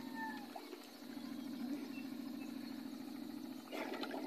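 Faint water splashing as men wade in a bamboo fish corral, with a short splash near the end, over a steady low hum. A few short falling chirps come about half a second in.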